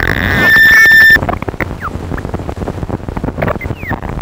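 Electronic improvisation on a Ciat-Lonbarde Cocoquantus 2: a stuttering train of about five clicks a second, with a swirl of warbling pitches that locks into a loud, high held tone and cuts off suddenly just over a second in. After the cut come more clicks and a few short gliding chirps.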